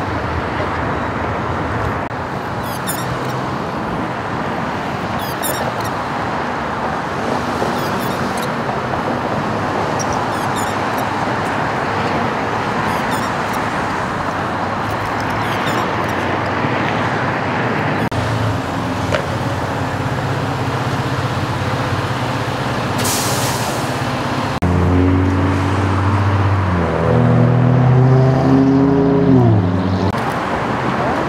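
Steady freeway traffic noise. Near the end, a louder low pitched drone joins in and shifts up and down in pitch in steps.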